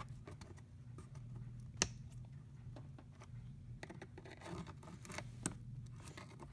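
Faint scraping and clicking of a small screwdriver tip working a plastic push-pin retainer up out of a plastic engine cover. There is a sharper click about two seconds in and another near the end.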